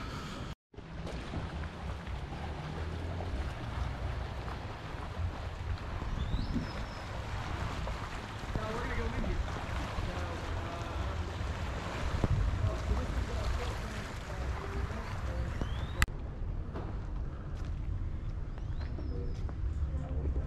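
Wind buffeting the camera microphone outdoors by the sea: a steady, uneven rumble with a windy hiss over it. A sharp click about 16 seconds in, after which the sound is duller.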